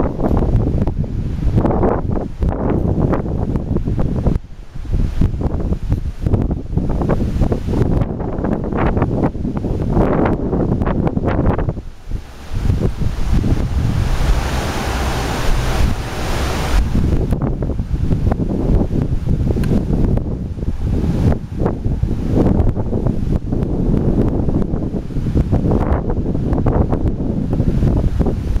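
Strong gusty wind buffeting the camera microphone with a loud, uneven low rumble. A brighter hiss swells briefly around the middle.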